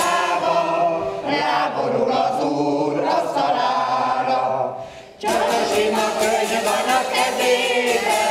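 A choir of older women singing together, largely unaccompanied through the middle of the stretch. The sound dips sharply just before five seconds, then the choir comes back in with rhythmic zither strumming.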